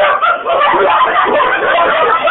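A man laughing among loud, overlapping party voices and chatter, sounding thin through a cell phone's microphone.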